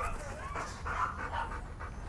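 Belgian Malinois panting faintly.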